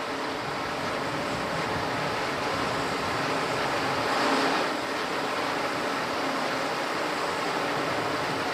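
Steady rushing noise, with a faint low hum and a brief swell about four seconds in.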